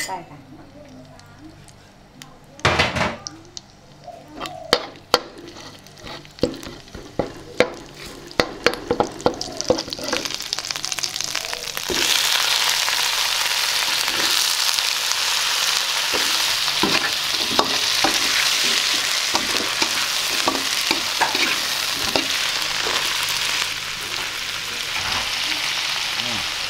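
A metal spatula scrapes and taps a wok while curry paste fries quietly in a little oil. About halfway through, sliced eggplant goes into the hot oil and a loud, steady sizzle starts, with the spatula clattering against the wok as the vegetables are stir-fried.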